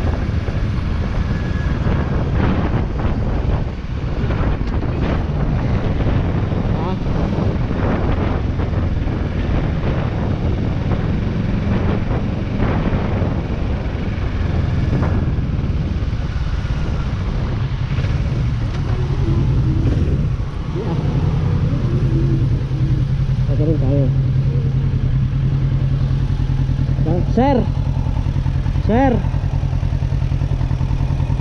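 Motorcycle engine running under way, then slowing and settling into a steady idle about two-thirds of the way through.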